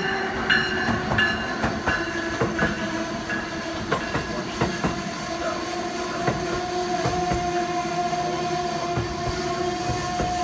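Amtrak Northeast Regional coaches rolling past behind an electric locomotive, wheels clicking irregularly over the rail joints. A repeated ringing tone fades out in the first two seconds, and a steady whine from the train comes in about six seconds in.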